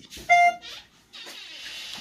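A short electronic beep, a single steady tone with overtones, sounds once just after the start, followed by a few faint spoken syllables and a soft hiss.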